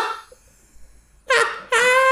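After a brief pause, a person lets out a long, high-pitched squeal of laughter, starting a little over a second in and held on one steady pitch.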